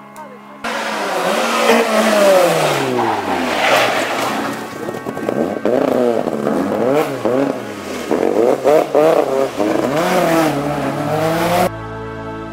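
Rally car engine, a first-generation Volkswagen Golf, cutting in abruptly and loud. It is revved hard, its pitch falling and rising again several times as the car slows and accelerates through the gears. It cuts off suddenly near the end.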